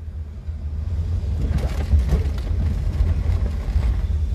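Low, steady rumble of a car heard from inside its cabin.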